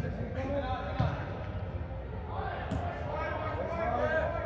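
Soccer ball being kicked on indoor artificial turf: hollow thuds echoing around a large hall, one at the start and another about a second in. Players shout and call to each other in the distance.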